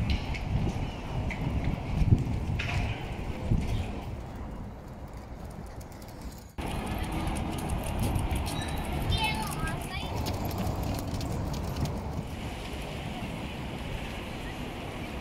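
Outdoor ambience: wind rumbling on the microphone with scattered voices of passersby, broken by an abrupt cut about six and a half seconds in, after which a steadier wash of wind and water noise carries on.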